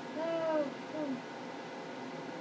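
Two short wordless vocal sounds from a woman, a hooting 'ooh'-like tone that rises and falls, then a shorter one falling in pitch, both within the first second or so.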